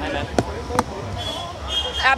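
Press photographers' camera shutters clicking: two sharp clicks less than half a second apart, over low chatter.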